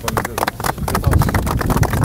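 A small group of people clapping, a quick irregular run of sharp claps.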